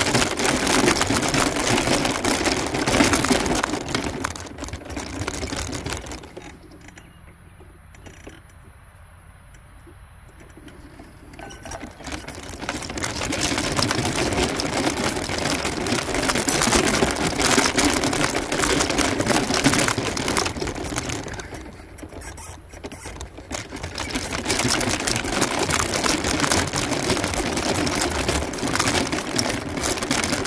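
Powered wheelchair running across a rough lawn, a steady motor whir with wheel rumble. It eases off for several seconds about six seconds in, and again briefly a little past twenty seconds.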